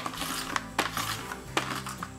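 Plastic screw-top bucket lid being twisted out of its threaded ring, giving a few sharp plastic clicks, under steady background music.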